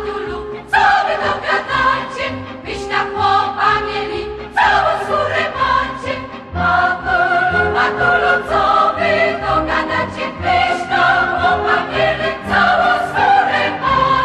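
Background music: a choir singing with instrumental accompaniment.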